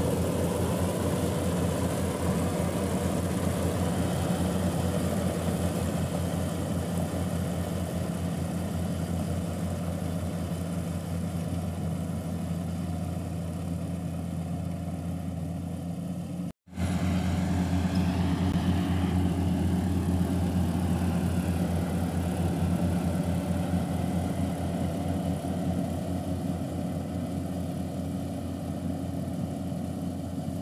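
Kubota AR96 combine harvester running steadily while harvesting rice, a constant engine drone. About halfway through the sound cuts out for a moment and then resumes unchanged.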